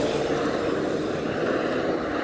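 Road traffic: a tarp-covered truck driving past and pulling away along the road, its engine and tyre noise a steady drone.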